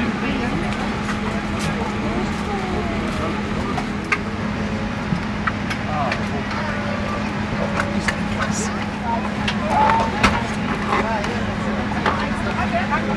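Airliner cabin at the gate: a steady low hum of the aircraft's systems under a noise bed, with indistinct passenger chatter and a few sharp clicks and knocks.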